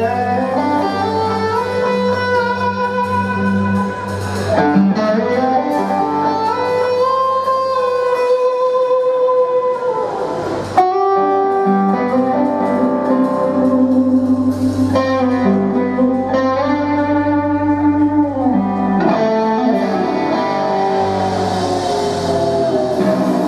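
Live electric guitar solo through a Marshall amplifier: long sustained notes with slow bends and glides, held over steady bass notes, with a sharp re-attack about halfway through.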